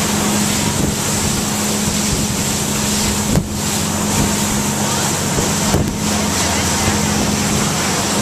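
Fast motorboat's engine running steadily at speed, a constant drone under heavy wind rush on the microphone; the rushing hiss dips briefly twice.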